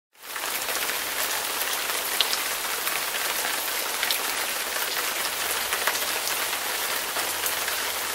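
Steady rain falling, a dense even hiss with scattered faint drop ticks.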